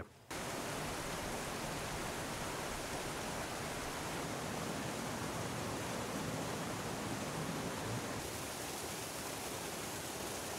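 Glacial meltwater rushing over rocks and ice in a steady, even rush, its tone shifting slightly about eight seconds in.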